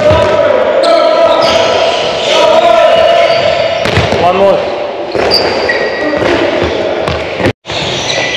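A handball is thrown and hits the goal, the goalkeeper and the wooden floor, echoing in a large sports hall. About 7.5 s in, the sound drops out for a moment.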